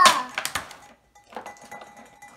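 A child's voice trails off at the start. Then come light clicks and rattles of clear plastic packaging and small plastic toy figures being handled on a tabletop.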